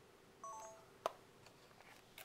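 A brief electronic beep of a few overlapping steady tones about half a second in, followed by a single sharp click, over a faint steady hum.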